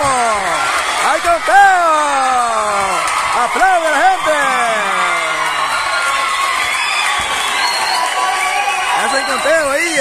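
Ringside spectators at an amateur boxing bout shouting and cheering, with several long, drawn-out shouts that fall in pitch over a steady crowd din.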